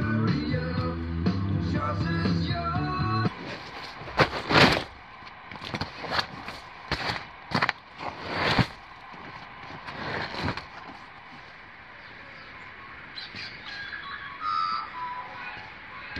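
A sung folk song with guitar ends abruptly about three seconds in. Then heavy canvas of a swag bedroll rustles and flaps in a string of loud swishes as it is handled and folded, before things go quiet.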